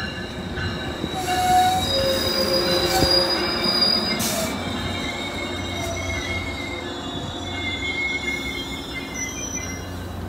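Metrolink bilevel passenger cars rolling past, their steel wheels squealing on the rails: several high-pitched squeals that come and go and shift a little in pitch, over a steady low rumble of the train.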